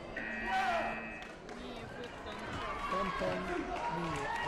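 A steady electronic tone sounds for about a second near the start: the taekwondo scoring system's signal that the match clock has run out. It plays over the voices of a busy sports hall.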